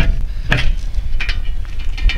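Metal hatch lid on a concrete well cover being pried up and swung open: a sharp metallic clank about half a second in, then a few lighter clicks and scrapes, over a steady low rumble.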